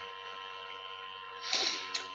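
A pause in a man's talk, filled by a steady background hum of several held tones. About one and a half seconds in there is a short, breathy sound, like an intake of breath before speaking.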